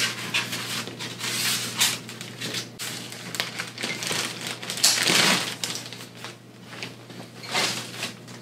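Cardboard packing and styrofoam blocks being handled and shifted while unboxing, with plastic wrap rustling: irregular bursts of scraping and rustling, strongest about a second in and again around four to five seconds in.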